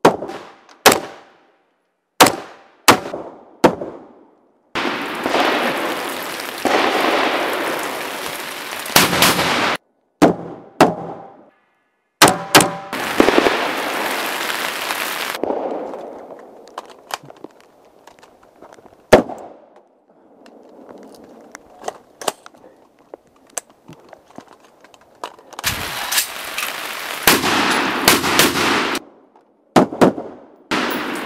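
AR-15 carbine shots fired one at a time in quick strings, about fifteen sharp cracks, some close together and others seconds apart. Between strings come stretches of rushing noise, and the sound cuts off abruptly in places.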